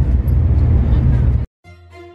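Steady low rumble of a Shinkansen bullet train's passenger cabin at speed. It cuts off abruptly about a second and a half in, and string music begins.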